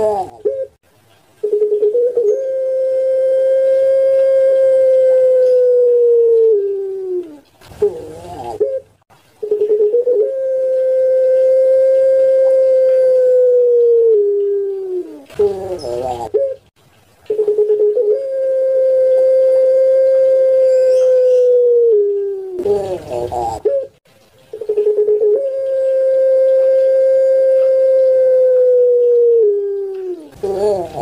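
Puter pelung ringneck dove giving four long drawn-out coos in a row. Each coo opens with a few short notes, then holds one steady tone for about five seconds that sags in pitch at the end.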